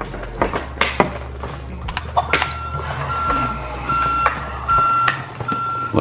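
Electronic reversing-beep sound from a Paw Patrol Rocky toy garbage truck: five steady beeps, a little under a second apart. Before them come a few clicks of the plastic toy being handled.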